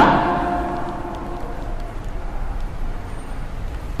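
A pause in a sermon: the preacher's voice dies away in the reverberant hall, leaving a steady low background rumble of room noise picked up through the microphone.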